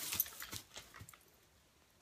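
Faint rustling and a few small clicks as a small dog scuffles and noses at a packaged travel pillow, dying away to near silence after about a second.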